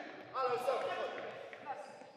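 Futsal players' shouted calls across a large sports hall, with a longer burst of calls early on and a short call about a second and a half in.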